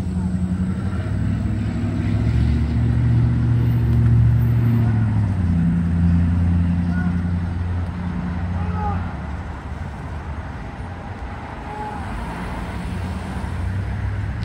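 Road traffic on a multi-lane road: car engines and tyres of passing and idling vehicles making a steady low rumble, loudest a few seconds in and easing after about nine seconds.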